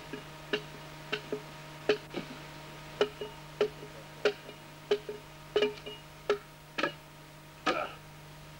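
A broad axe striking the timber as a sleeper is hewed and finished, in a run of short, sharp chops about one every two-thirds of a second.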